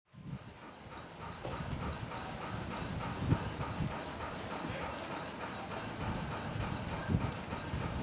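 A rhythmic mechanical clatter repeating at a quick, even pace over a low rumble, with a few sharper knocks. It fades in from silence and slowly grows louder.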